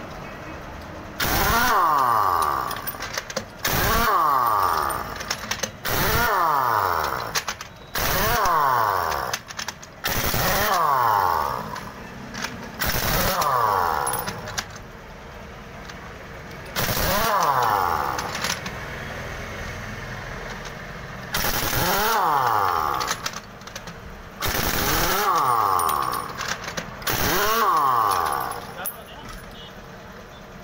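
A heavy-duty pneumatic impact wrench runs on a bus's wheel nuts in about ten separate bursts of a second or two each, spaced a few seconds apart. The pitch falls away at the end of each burst. It is undoing the wheel nuts one after another to take off the punctured rear wheel.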